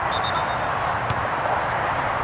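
Steady outdoor background noise with no clear single source, and a brief high thin tone lasting about half a second near the start.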